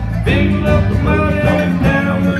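Acoustic guitar strummed with an electric bass guitar underneath, playing an upbeat country-blues tune live.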